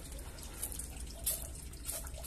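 Hand-held trigger spray bottle misting a water solution onto plants in a seedling tray: a few short, faint hissing sprays.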